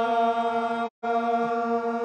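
Garhwali jagar chant: one long sung note held at a steady pitch. It breaks off into a short gap of silence about a second in, then carries on at the same pitch.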